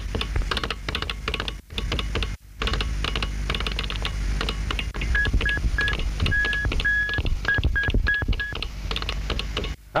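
Radio-drama sound effect of telegraph signalling: rapid irregular clicking, with a run of short and long beeps in the middle like Morse code.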